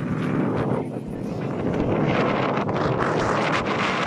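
Wind buffeting a phone's microphone outdoors, a steady rushing noise, with the voices of people walking by mixed in.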